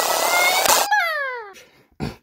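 Electrical sparking sound effect: a crackling hiss with a faint, slowly rising whine. It cuts off just under a second in and gives way to a falling power-down tone that fades out, the sound of a damaged machine shorting out and shutting down.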